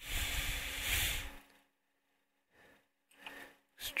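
A long, noisy breath out close to the microphone, lasting about a second and a half, then a short, fainter breath near the end.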